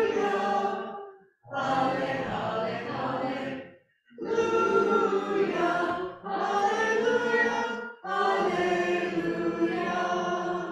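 Small congregation singing a hymn together, apparently unaccompanied, in phrases of about two seconds, each followed by a brief pause for breath.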